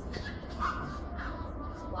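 A small dog yapping in short repeated bursts, with a steady low hum underneath, heard as a TV programme's soundtrack playing through a speaker.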